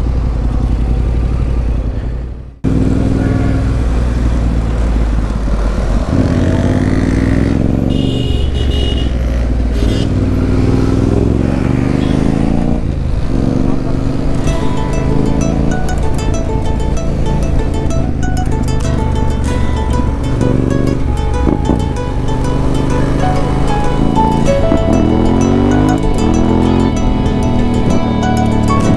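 Motorcycle engine and road noise while riding, fading out and cutting off about two and a half seconds in. Then a motorcycle engine revs up through its gears several times under background music.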